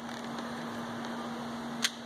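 A 12-volt demand water pump runs with a steady hum. It is running dry because the water tank has been drained. A single light click comes near the end.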